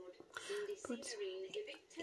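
Speech only: a person talking quietly.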